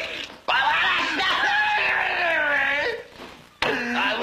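A high-pitched voice crying out without words in two long wails that rise and fall in pitch. The first runs from about half a second in to about three seconds, and the second begins just before the end.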